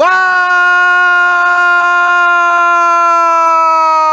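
A male football commentator's long drawn-out goal shout of "vào!" (Vietnamese for "in!"), held loud on one steady pitch and dropping away near the end.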